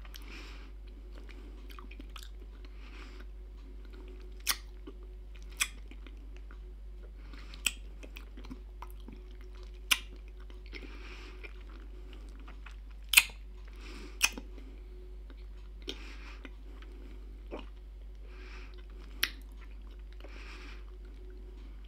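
Mouth sounds of someone slowly sucking and chewing a hard salty-liquorice candy ring: scattered sharp wet smacks and clicks every second or few, with softer hissy sounds between them over a faint steady hum.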